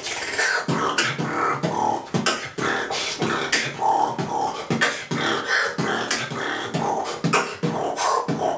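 A man beatboxing a drum-kit pattern with his mouth: a fast, steady run of kick, snare and hi-hat sounds with short voiced notes in between, in a freestyle groove.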